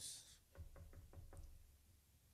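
About seven quick, faint knocks with the knuckles, a rap acting out someone knocking at a house door.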